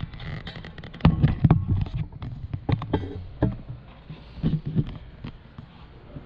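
Irregular knocks and clunks, a cluster of the loudest about a second in and a few more around three and five seconds, with no steady motor running.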